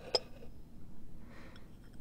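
A porcelain lidded teacup set down on a table: one sharp clink with a brief ring just after the start, then a faint soft rustle.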